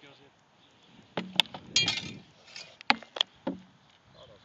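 Swords striking shields in a sparring bout: about six sharp knocks in the last three seconds, one near the middle followed by a brief ringing.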